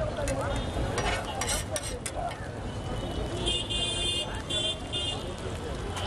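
Metal spatula scraping and knocking on a large iron griddle, with oil and food sizzling, amid street noise and voices. A pulsing high-pitched squeal comes in short broken bursts in the second half.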